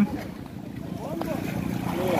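Voices of several people calling out across the water over a steady low rumble.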